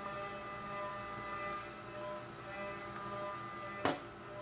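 Steady background hum of several held tones, with one short knock near the end as something is set down on the workbench.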